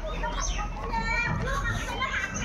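Overlapping chatter of schoolchildren's voices, several talking and calling out at once.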